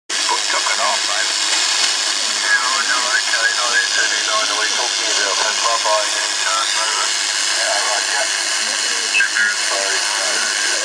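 Homebrew direct-conversion receiver on the 80 m band playing loud, steady band hiss through its speaker, with faint garbled single-sideband voices of radio amateurs coming through the noise. The receiver has no audio bandwidth filtering, so the hiss is wide open and very noisy, which is typical of 80 metres.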